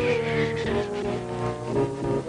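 Slow orchestral film score with long held low notes that shift to a new chord near the end.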